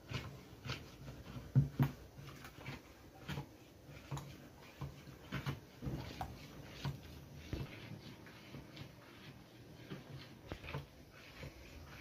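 A spoon stirring a thin mix of rice flour and cornstarch in cold milk inside a plastic bowl, with irregular light clicks and taps as it knocks against the bowl, a few times a second.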